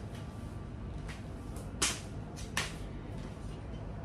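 Three short sharp taps in a kitchen, the loudest a little under two seconds in, over a steady low background noise.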